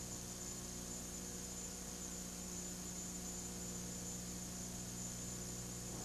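Steady hiss with a low electrical hum and a faint high whine, the background noise of an old broadcast tape recording; nothing else stands out.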